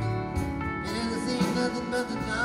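Live rock band music with electric guitars and drums, from an audience tape of a concert.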